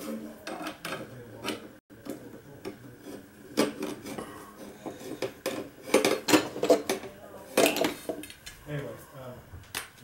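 Metal hand tools clinking and clanking against each other and a metal toolbox as hands rummage through it, in a run of short, irregular clanks that are loudest in the middle.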